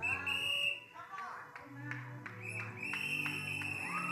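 A church keyboard holding soft sustained chords, with a high, steady whistle-like tone held twice, once at the start and again from past halfway. Short voice sounds from the room break in over it.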